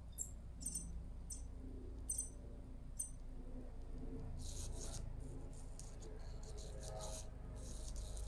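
EMO desktop AI robot making faint electronic chirps while it processes a "go home" voice command: a few short high squeaks in the first three seconds, then a soft hissing stretch about halfway through, over a steady low hum.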